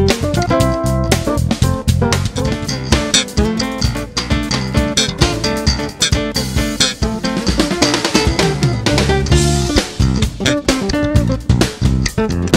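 Instrumental trio playing: acoustic-electric guitar and electric bass over drums, with a steady rhythm of drum strokes and plucked guitar lines.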